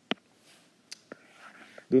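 A short pause in a man's narration: one sharp click from the mouth just after the start, a couple of fainter clicks about a second in, and faint breath noise, then he starts speaking again just before the end.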